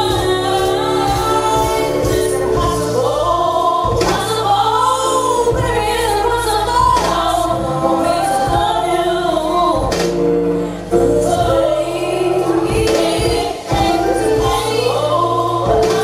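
A woman singing a song into a microphone over backing music with a bass line and beat. The melody rises and falls in long held phrases.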